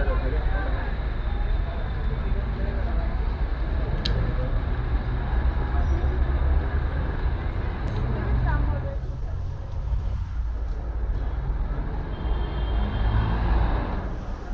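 City street ambience: a steady low rumble of traffic, with snatches of passers-by talking now and then.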